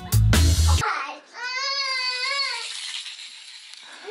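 Music with a steady beat cuts off abruptly under a second in. Then a child's voice holds one long, high, wavering note for about a second before fading.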